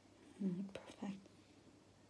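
A woman's short hummed vocalisation in two parts, like "mm-hm", with a light click between them.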